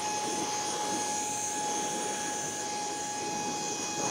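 Ryobi handheld cordless blower running at a steady speed: a constant high motor whine over a rush of air, blowing rinse water out of a car's grille and tight gaps.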